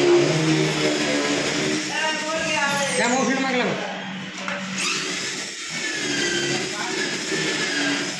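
A small motorcycle engine running steadily after a clutch plate change, with indistinct voices over it.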